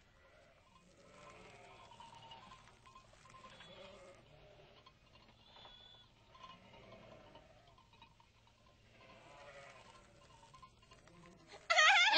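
Sheep and goats bleating faintly, many short calls one after another. A much louder sound breaks in right at the end.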